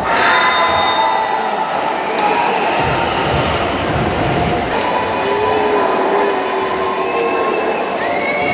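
Crowd in a volleyball arena cheering, with music playing over it at a steady level.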